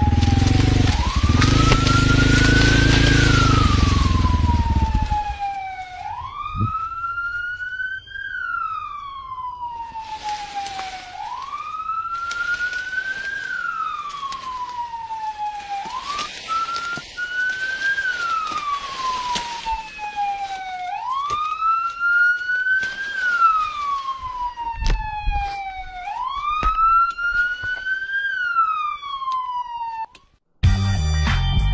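A police-style siren wails over and over, each cycle rising quickly and falling slowly, about every two and a half seconds. A motorcycle engine runs under it and cuts off about five seconds in, leaving the siren with light rustling and clicks.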